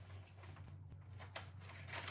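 Faint rustling and scratching of a sheet of sublimation transfer paper being handled and cut off the roll with a dull blade: a few short scratches over a steady low hum.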